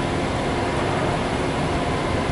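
Steady low hum of city street traffic, with buses close by.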